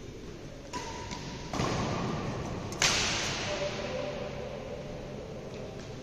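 Badminton rackets hitting a shuttlecock in a doubles rally: a light tick about a second in, then a sharp crack nearly three seconds in, the loudest sound, ringing on in the hall. A rushing noise rises just before the crack.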